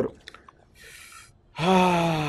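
A man breathes in audibly, then lets out a long, drawn-out "aah" that slowly falls in pitch: a thinking hesitation before answering a question.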